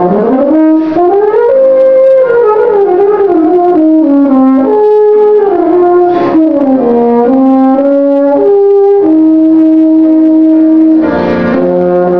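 Euphonium playing a fast solo line: a quick run down to a low note, a climb back up, then phrases stepping up and down, with a long held note near the end.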